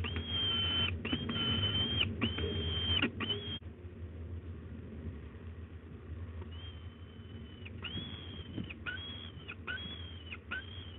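Peregrine falcon chick giving repeated drawn-out, high, flat begging wails, each under a second long, with a lull of a few seconds in the middle before the calls start again. A steady low hum runs underneath.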